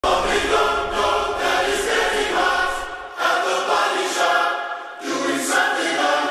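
Background music of a choir singing, in phrases of about a second each.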